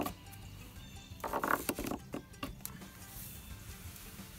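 A sharp chip of concrete scraped hard across old, rough wood in short strokes, gouging a line into the board to mark a cut.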